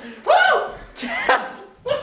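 Wordless drawn-out vocal cries like 'oh', two of them, each rising then falling in pitch, mixed with laughter.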